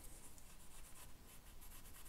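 Faint rubbing of a cotton pad, wet with rubbing alcohol, wiped back and forth over a CPU's metal heat spreader to strip off old thermal paste.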